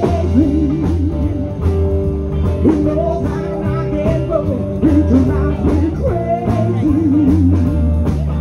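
Live blues-rock band playing: singing over electric guitar, bass guitar and drum kit.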